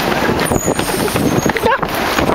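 Wind buffeting the microphone and jolting handling noise from a camera carried by someone running, with a short shout about one and a half seconds in.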